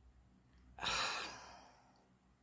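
A breathy sigh exhaled close into a handheld microphone. It starts sharply about a second in and trails off.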